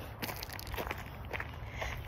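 Footsteps of a person walking on a dirt trail: a few soft, irregular crunches over a steady low rumble.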